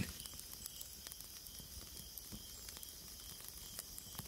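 Faint steady hiss with scattered soft crackles and ticks.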